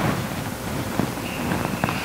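Steady background hiss of room noise, with a few faint clicks and a faint thin high tone in the second half.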